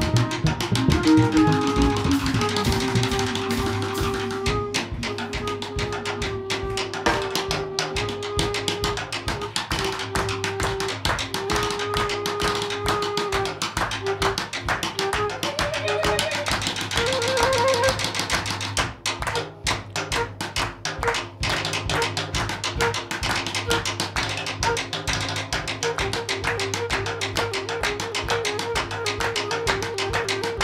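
Instrumental passage of a jazz band, with a steady drum beat under long held notes and no singing.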